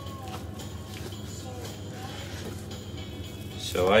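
A steady low hum runs throughout, with faint music in the background; no knife or cutting sound stands out.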